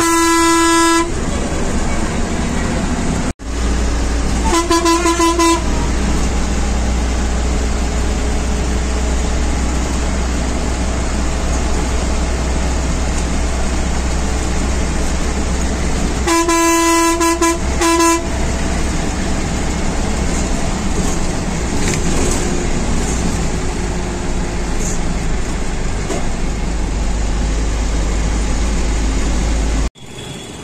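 A vehicle horn honks several times, one of them a longer double blast past the middle, over the steady engine rumble and road noise of a moving bus heard from inside.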